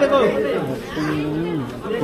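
Voices: people talking and chattering around a crowd, with one voice drawn out on a held tone about halfway through.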